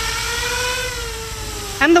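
Z-2 RC bi-copter's twin rotors and motors humming steadily in flight, the pitch rising a little and then sinking as the throttle eases off.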